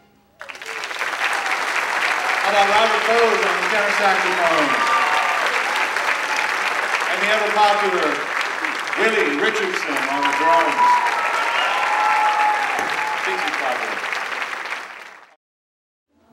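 Audience applauding the band at the end of a piece, with voices calling out and cheering through the clapping. The applause starts about half a second in, runs steadily, and cuts off suddenly near the end.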